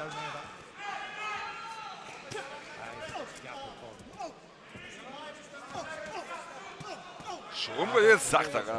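Boxing match in the ring: scattered thuds from gloves and footwork on the canvas mixed with talking voices, with a louder burst of sound near the end.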